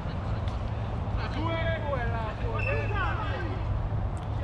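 Footballers' voices shouting and calling out across the pitch during play, heard at a distance over a steady low hum.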